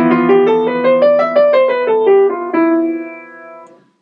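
Piano: a low chord struck and held while a quick scale climbs about an octave and comes back down, ending on its starting note, the E Phrygian mode from E to E. The chord and last note then ring on and fade away.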